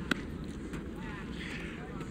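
Outdoor background ambience: a steady low rumble like wind on a phone microphone, with faint distant voices about halfway through. A single sharp click comes just after the start.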